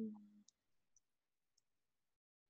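Near silence with three faint, short clicks about half a second apart.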